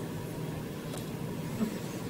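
A pause in speech: steady, faint background hiss and hum of the meeting chamber.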